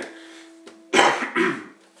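A man coughs about a second in: one harsh cough followed by a shorter, weaker second one.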